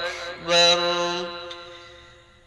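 A young man chanting Islamic dhikr in Arabic into a handheld karaoke microphone. After a brief break he holds one long note at a steady pitch from about half a second in, and it slowly fades away.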